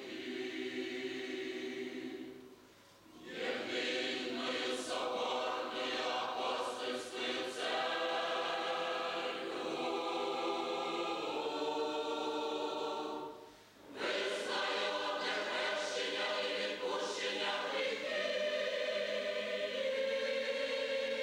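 Choir singing a Christian hymn in long sustained phrases, with two short pauses between phrases, about three seconds in and again about thirteen seconds in.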